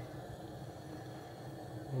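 Steady, faint hiss of a lit gas hob burner heating a frying pan of vegetable oil.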